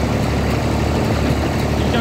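Fordson Dexta tractor engine running steadily while the tractor drives across the hayfield.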